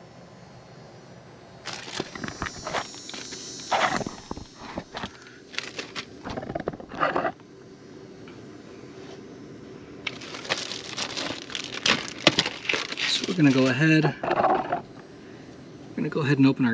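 Plastic parts bags crinkling and rustling as they are torn open and handled, in two bouts with many sharp crackles.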